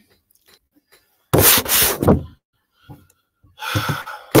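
A loud, breathy burst of a person's voice on the call microphone, about a second long, a little over a second in, with a shorter one near the end.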